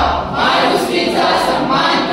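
A group of young voices singing together in chorus, phrase after phrase with short breaks between.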